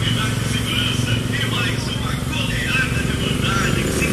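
Road traffic: a steady low engine rumble, with short faint high-pitched sounds scattered over it.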